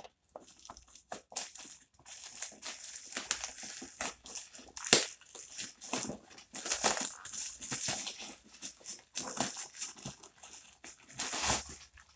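Plastic mailer bag and its packaging being torn open and crinkled by hand: irregular crackling and rustling, with a sharper snap about five seconds in.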